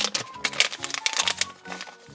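Plastic blind-bag packet crinkling as it is torn open and a figurine is pulled out. The crinkling thins out near the end.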